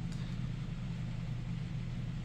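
A steady low background hum with faint hiss and no other events.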